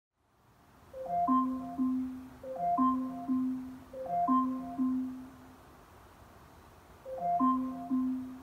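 Amazon Echo smart speaker sounding its alarm: a short chime phrase of three rising notes followed by two lower held notes, repeating about every second and a half. It breaks off for about a second and a half, then starts again near the end.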